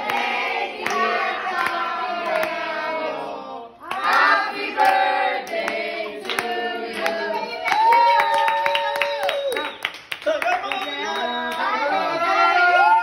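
A small group of people singing a birthday song together and clapping along to the beat.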